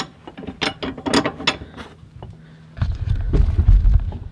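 Quick metallic clicks and clinks as a bolt and nut are fitted by hand into a steel bumper mounting bracket. About three seconds in comes a loud low rumble.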